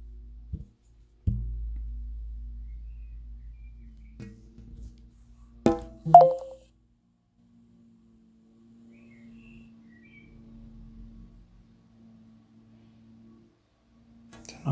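Smartphone handled on a desk over NFC cards: a few light knocks, then a sharp click and a short beep about six seconds in as the phone reads the NFC tag, followed by a faint steady hum.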